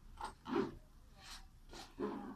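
A fabric backpack being handled, with a few short, soft rustling and scraping sounds.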